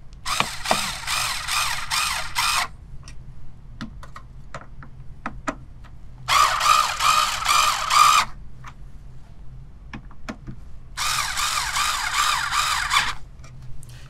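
Small cordless electric screwdriver running in three bursts of about two seconds each, driving the CPU heat sink's screws down one after another in a zigzag tightening order. Small clicks and handling knocks fall between the bursts.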